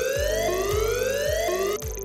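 Alarm siren sound effect: a rising whoop about a second long, repeated, the last one cut off short near the end, over background music. It signals a quality alarm, neps up by 200%.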